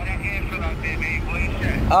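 A man's voice over a phone's speakerphone, thin and tinny, with a steady low rumble underneath.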